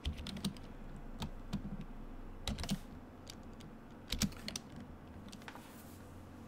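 Typing on a computer keyboard: irregular runs of keystrokes, with the loudest cluster about four seconds in, thinning out near the end.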